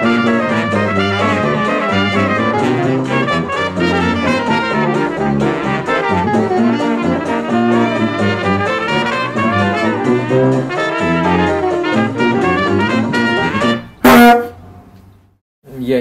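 Jazz music led by brass instruments, ending about 14 seconds in with one sudden, very loud hit that rings briefly and dies away.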